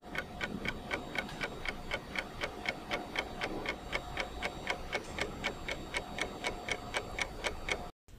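Clock-tick sound effect used as an answer timer, ticking evenly at about five ticks a second. It stops suddenly at the end.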